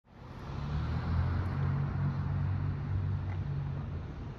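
Road traffic: a motor vehicle's low engine hum with tyre noise, rising over the first half-second and easing slightly near the end.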